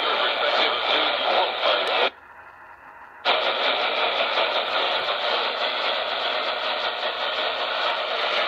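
AM radio static and hiss from a Maxx Digital clock radio's speaker, cutting out suddenly for about a second a couple of seconds in and then returning.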